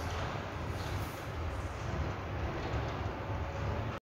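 Steady low background rumble with no speech, fairly faint.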